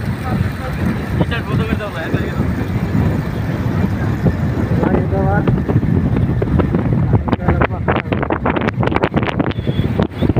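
Wind rushing and buffeting over a phone's microphone on a moving motorcycle, a heavy low rumble that turns into rough, crackling gusts in the last few seconds.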